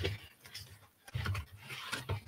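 A cardboard mailer box being handled: its flaps are folded open and the cardboard slides and rubs. There are two low bumps, one at the start and one a little after a second in, and a faint scraping hiss near the end.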